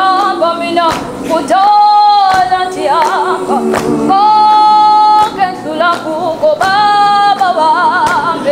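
A choir singing a cappella gospel, a woman's voice holding long high notes between the group's phrases, with sharp hand claps between the sung lines.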